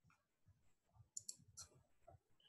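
Near silence, broken by three faint, short clicks a little past a second in.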